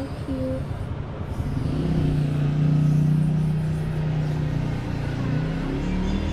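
A motor vehicle's low engine hum that swells about two seconds in and eases off near the end.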